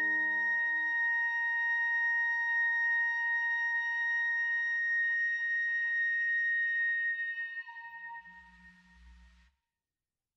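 The closing held note of a wind ensemble piece. The lower notes of the chord stop within the first second, leaving one high, pure ringing tone that fades away between about seven and nine seconds in, with a faint low rumble just before it ends.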